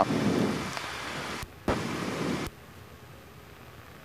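Steady hiss of engine and wind noise in the cockpit of a 1966 Cessna 172G on approach at reduced power, as picked up through the headset intercom. The noise cuts out with a click about a second and a half in, comes back briefly with another click, then cuts out again with a click a little past halfway, leaving it much quieter: the intercom's voice-activated squelch closing and opening.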